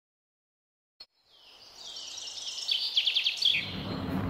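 Dead silence, then a short click about a second in, followed by birds chirping with a quick trill of notes over low background noise.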